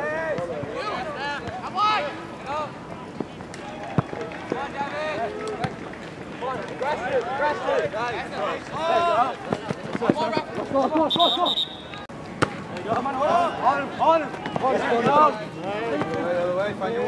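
Shouting voices of players and coaches on a soccer field, with a few sharp knocks of the ball being kicked and one short, high whistle blast about eleven seconds in.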